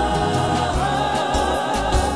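Mixed choir singing a held chord over a steady low bass.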